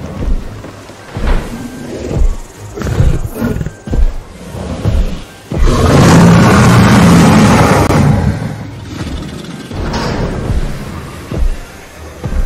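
A Tyrannosaurus rex roar sound effect: one long, loud roar starting about six seconds in and lasting some three seconds. Before it comes a series of low thuds about a second apart.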